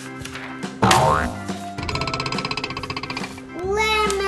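Background music with added cartoon sound effects: a rising boing about a second in, then a fast, even fluttering trill, and falling pitch glides near the end.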